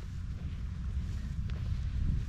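Wind noise on an outdoor camera microphone: a steady low rumble.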